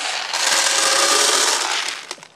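Many small hard beads poured from a plastic jug into a clear plastic container, a dense steady clatter that starts a moment in and stops near the end.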